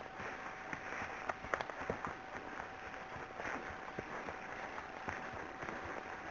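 Horse walking on a woodland track: scattered, irregular hoof thuds and soft clicks over a steady rustling hiss.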